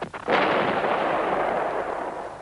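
A sharp crack, then a sudden loud blast of noise that holds for about a second and a half before fading, like a gunshot or explosion effect on a film soundtrack.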